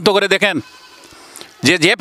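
A man speaking Bengali into a close handheld microphone. He breaks off for about a second in the middle, then starts again near the end.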